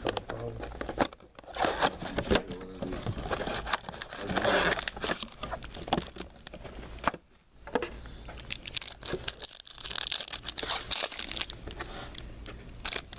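Foil trading-card pack wrappers crinkling and being torn open by hand, in irregular crackling bursts.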